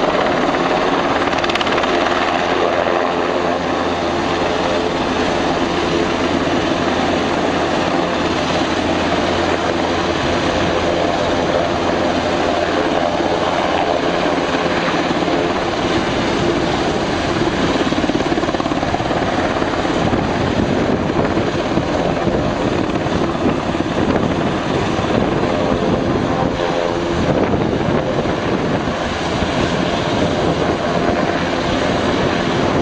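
Eurocopter AS532 Cougar twin-turbine military helicopter hovering low: a loud, steady rotor and turbine noise that holds without a break.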